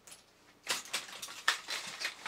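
Small screwdriver clicking and scraping against the tin-plate body of a 1960s Japanese toy robot as its metal tabs are pried and bent straight. A few sharp clicks start about two-thirds of a second in.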